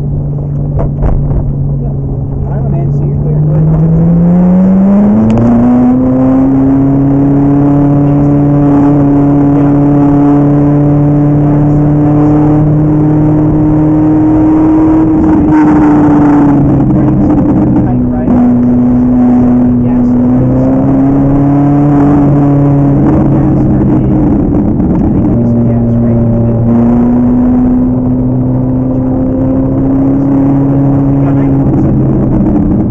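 Ferrari 458's 4.5-litre V8 heard from inside the cabin. The engine note climbs as the car accelerates a few seconds in, then runs steadily at speed, dipping briefly twice as the driver eases off and comes back on the throttle.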